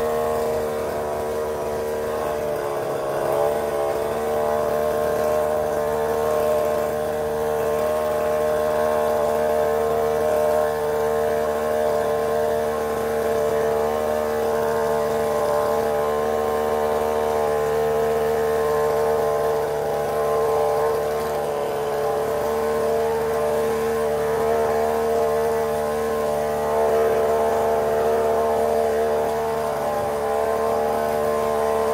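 Chainsaw engine running steadily at constant speed, its pitch wavering briefly about three seconds in.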